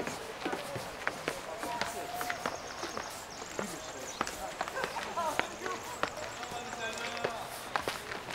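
Footsteps crunching on a gravel path, irregular short steps, with other people talking faintly in the background.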